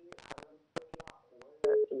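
A telephone caller's line over the air: sharp clicks and crackle with a faint steady tone, then the caller's voice starting through the phone near the end.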